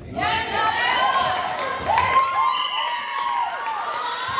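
Many young girls' voices shouting and cheering together, breaking out suddenly a moment in during a volleyball rally, with a few sharp slaps of ball contacts or hand claps.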